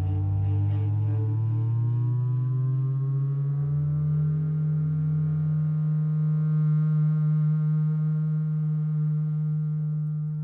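Freely improvised electro-acoustic chamber music for double bass, saxophone and Moog Etherwave theremin. A strong low sustained tone glides slowly upward over the first few seconds and then holds steady, with quieter held tones above it.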